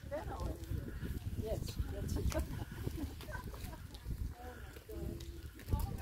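Indistinct chatter of several women talking as they walk together, with their footsteps on asphalt.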